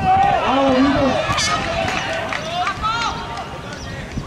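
Several voices shouting and calling out at once from the sidelines and pitch of an outdoor football match, loudest in the first second or so as an attack goes at the goal.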